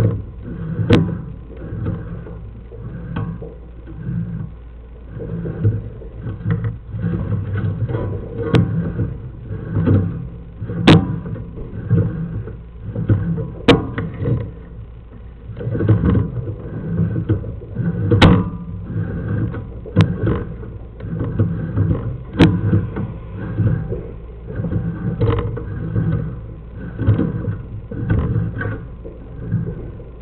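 Sewer inspection camera being pushed along the pipe: irregular rumbling and scraping pulses with several sharp clicks, over a steady low hum.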